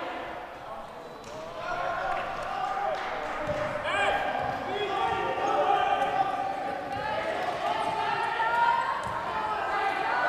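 Wheelchair basketball game sounds on a hardwood court: the ball bouncing while players call out to each other.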